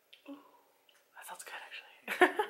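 Quiet whispered speech: a brief murmur near the start, then a longer hushed, breathy stretch in the second half.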